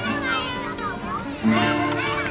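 Children's voices chattering and calling out, mixed with background music with steady held notes.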